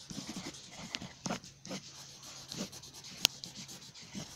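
Pencil writing on paper: short scratching strokes as letters are written, with one sharp click about three seconds in.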